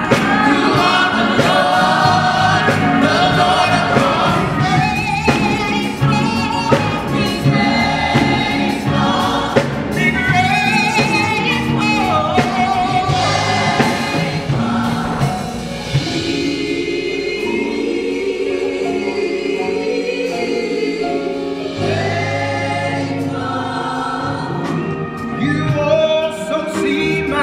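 Large gospel choir singing, with sharp beats running under the voices. About sixteen seconds in the beats mostly drop away and the choir moves to lower, long-held chords.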